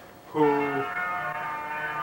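A man's voice drawing out the word "who" into a long, steady, held tone at one pitch, like a chanted drone.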